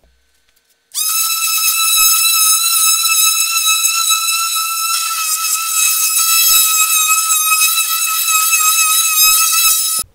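Ryobi random orbital sander running on an MDF panel, a loud, steady high-pitched whine that starts about a second in, sanding the filled nail holes smooth before priming.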